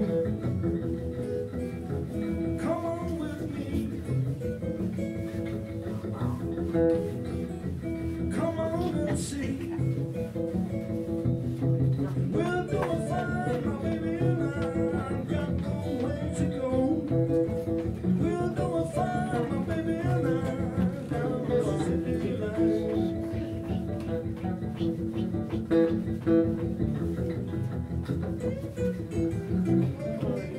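Live instrumental break of two guitars: a steel-string acoustic guitar strummed in a steady rhythm while a second guitar plays melodic lead lines with bent notes.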